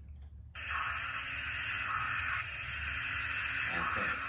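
Sound decoder of an N scale Broadway Limited Paragon3 Light Pacific steam locomotive starting up through its small onboard speaker: a steady steam hiss that comes on suddenly about half a second in, over a low hum.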